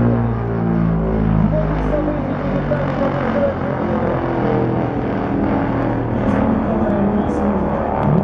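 Tupolev Tu-95 bomber flying low overhead, its four turboprop engines with contra-rotating propellers making a loud, steady drone of several held tones. A deep rumble beneath it drops away about two seconds in.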